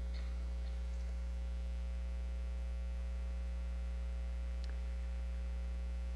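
Steady electrical mains hum from the sound system, level and unchanging, with a couple of faint brief clicks.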